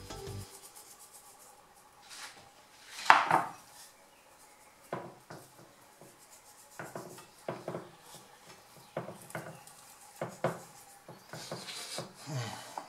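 Hands rubbing seasoning into raw lamb pieces in an unglazed clay baking dish: soft, scattered rubbing and handling noises against the meat and clay, with one louder scrape about three seconds in.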